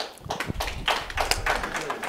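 Scattered hand claps from a few people, sharp and irregular, several a second.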